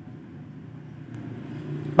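Low, steady background rumble with no clear pitch, growing a little louder near the end, with one faint click about a second in.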